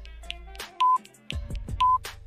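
Countdown timer sound effect: two short, steady high beeps about a second apart, one near the middle and one near the end, over soft background music.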